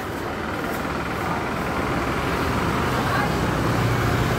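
A motor vehicle's engine running with a steady low hum that grows louder in the second half, amid street noise and voices.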